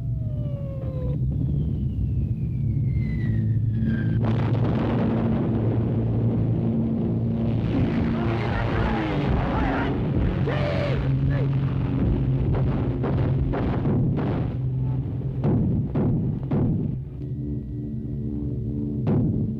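Film soundtrack of a night air raid: a steady low drone of heavy bomber engines, with falling whistles in the first few seconds and a run of explosions from about four seconds in until about eleven seconds.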